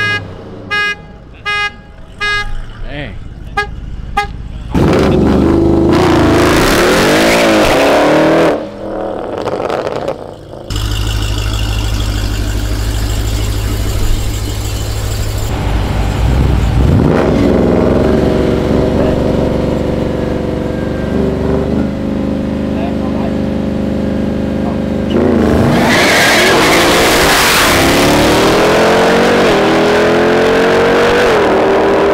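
A string of short car-horn toots, then high-performance car engines revving and holding high revs at the start line. Near the end the Jeep Grand Cherokee Trackhawk's supercharged V8 and the Audi S6 launch hard and accelerate away, their engine pitch rising.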